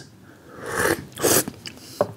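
Two short breathy rushes of air from a person's mouth, the first about half a second in and a shorter, sharper one just after a second in: breaths of distaste after tasting a sour, dry tea.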